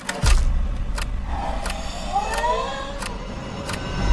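Horror film trailer sound design: a low drone under sharp clicks at an even beat, about one every 0.7 s, with a faint wavering, voice-like tone in the middle.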